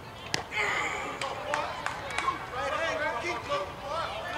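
A Little League pitch popping into the catcher's mitt once, sharply, about a third of a second in, for a called strike. Voices of players and spectators calling out follow over the field.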